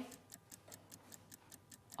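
Faint, fast, even ticking of a countdown-clock sound effect, several ticks a second.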